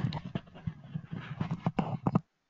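A man chuckling: a quick run of short, breathy laughs that stops abruptly.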